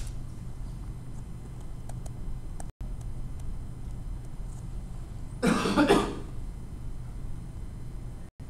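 A single short cough about five and a half seconds in, over a steady low hum of room tone.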